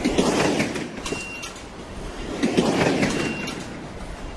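Two rushing whooshes, each swelling and fading like a train speeding past, about two and a half seconds apart, each followed by a short high beep.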